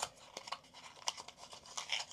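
Hands rummaging in a small cardboard box, scratching and rubbing against the packaging with many small irregular clicks.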